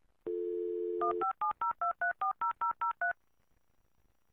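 Telephone dial tone, then a quick run of about eleven touch-tone (DTMF) beeps as a number is dialled, like the start of a dial-up modem call.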